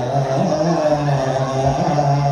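A man's voice singing, holding long steady notes that step up and down in pitch.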